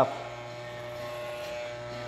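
Corded electric hair clipper running with a steady buzz while cutting the bulk out of thick curly hair.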